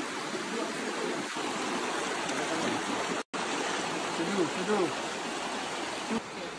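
Shallow, rocky river rushing and splashing steadily over stones. The sound cuts out for an instant about halfway through.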